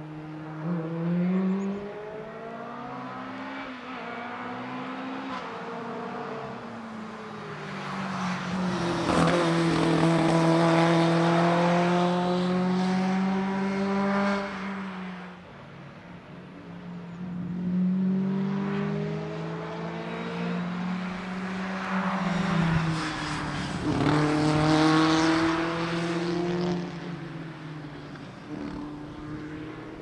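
Race car engine of a Škoda Rapid 130 RH accelerating hard through the gears. The pitch climbs, then falls back at each upshift. It grows loud as the car passes at full throttle, drops away for a moment, then climbs through the gears again out of a corner.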